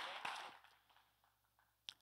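Congregation applause dying away within about half a second, then near silence, broken by a single short click just before the end.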